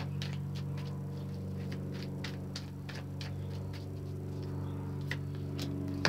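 A deck of tarot cards being hand-shuffled: a string of soft, irregular card clicks and flicks, a few each second, over a steady low hum.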